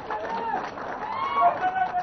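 Speech: several voices talking or calling out at once, with no other sound standing out.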